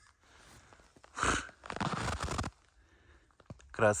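Snow crunching close to the microphone: a loud crunch about a second in, then a quick run of crackling crunches for about a second.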